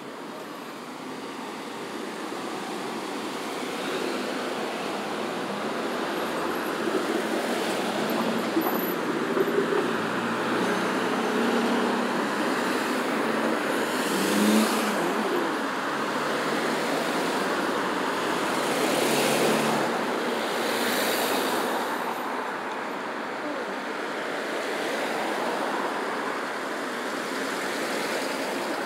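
Road traffic: cars and SUVs driving past close by through a multi-lane intersection, a continuous tyre and engine noise that swells as each vehicle goes by. It is loudest about halfway through and again a few seconds later.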